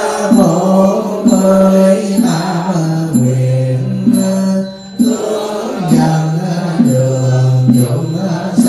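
A Buddhist monk chanting a slow, melodic Vietnamese liturgy through a microphone, holding long notes that step up and down in pitch. Short sharp strikes sound about once a second beneath the chant.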